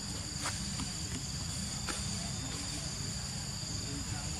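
A steady, high-pitched insect chorus, two shrill tones held without break, over a low steady rumble, with a few faint soft ticks.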